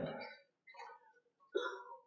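A pause in a man's talk: the end of his chuckle trails off at the start, then it is quiet. Just before he speaks again comes a short, faint throat sound.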